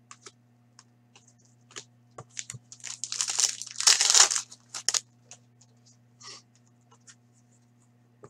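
Foil wrapper of a 2016-17 Upper Deck Artifacts hockey card pack being torn open and crinkled, loudest for about a second and a half in the middle. Scattered light clicks and rustles of cards being handled come before and after it.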